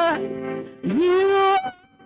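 A woman singing a slow worship song solo into a microphone, holding long notes with vibrato; about a second in, her voice slides up into a note held for half a second before it breaks off.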